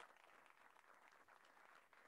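Very faint audience applause, many small hand claps at a low level.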